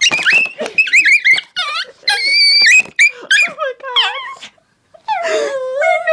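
Small dog barking and yapping in a string of short, high-pitched yaps, with one longer held yelp about two seconds in. The dog is agitated by a plastic water bottle that frightens it.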